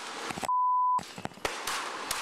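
A half-second broadcast censor bleep, a single steady 1 kHz tone, blanks out a word about half a second in. Around it runs the hissy audio of a police body camera, with a few sharp cracks.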